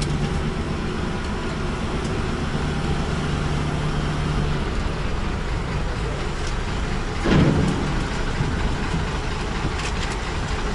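DAF truck's diesel engine running at low speed as it creeps forward, a steady low hum whose tone eases about halfway through. A short, louder burst of noise comes about seven seconds in.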